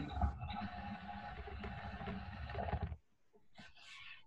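Rubbing and rumbling handling noise from the recording phone being picked up and moved, stopping abruptly about three seconds in.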